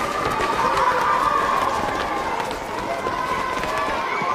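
A crowd of schoolchildren chattering and calling out, with many running footsteps.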